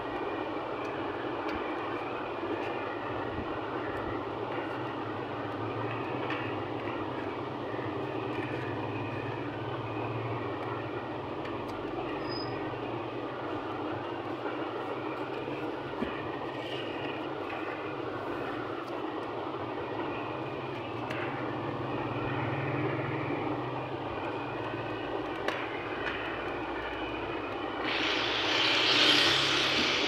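Steady mechanical background drone, with a few faint clicks of plastic toner-cartridge parts being handled. Near the end, a louder rushing hiss lasts about two seconds.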